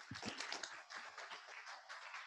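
Audience applauding: a dense patter of many people clapping that starts suddenly and goes on evenly, heard faintly.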